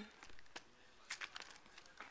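Faint handling noise: a few light clicks and rustles spread through a quiet stretch.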